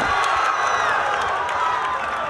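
Basketball arena crowd cheering loudly, a dense steady roar of many voices.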